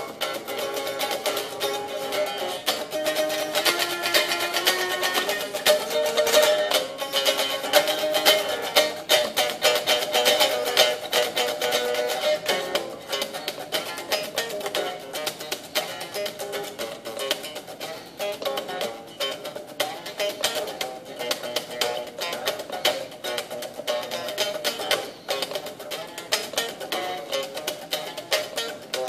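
Stratocaster-style electric guitar played in quick picked single-note runs, with a thin sound and little low end.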